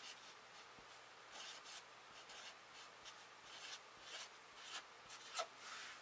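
Large felt-tip marker writing on paper: faint, short strokes of the tip on the page, several spread through.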